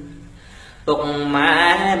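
Khmer smot, a man chanting Buddhist verse solo: a long held note fades away, then after a short lull a new melismatic phrase comes in loudly just under a second in.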